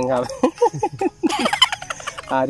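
A man laughing heartily: a quick run of about six short 'ha' pulses, then a breathy exhale near the end.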